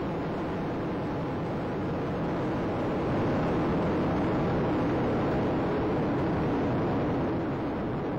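Space Shuttle rocket noise during ascent, the solid rocket boosters and three main engines burning at full thrust, heard as a steady rushing noise that grows a little louder about three seconds in.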